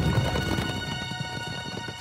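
Hoofbeats of a group of horses moving together, many overlapping irregular beats, heard under music with long held notes; the hoofbeats fade gradually toward the end.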